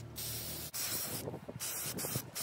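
Aerosol can of Kona Brown gloss spray paint hissing in about three short bursts as its coat goes onto a tray.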